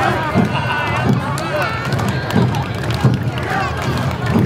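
Awa Odori festival band accompanying a dance troupe: drums keeping a steady beat about three strokes every two seconds, with a wavering higher melody line and voices over it.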